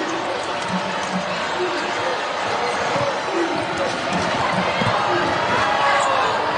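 Basketball arena game sound: a ball dribbling on the hardwood over a steady hum of crowd voices.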